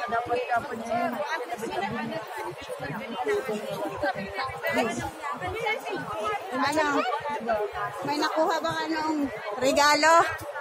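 Several people chattering at once, their voices overlapping without pause.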